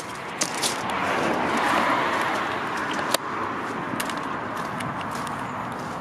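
A car going by on the road, its tyre and engine noise swelling over the first two seconds and then slowly fading away.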